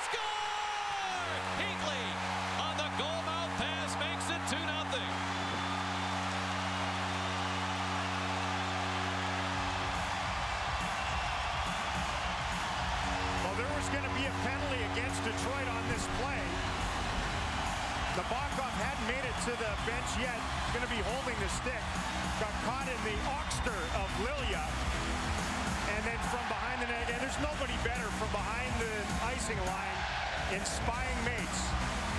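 Arena goal horn blowing for about eight seconds over a cheering crowd, celebrating a home goal. Then arena music with a heavy beat comes in under the crowd cheering, and the horn sounds again briefly.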